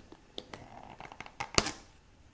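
Plastic lid of an ice cream tub being pried off and lifted away: small crinkles and clicks, with a sharper snap about one and a half seconds in.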